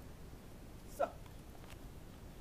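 Low steady background noise with a woman saying one short word about a second in, followed shortly after by a faint click.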